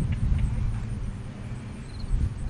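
Wind buffeting the microphone: an uneven low rumble that eases off toward the end. Faint, short insect chirps repeat high above it.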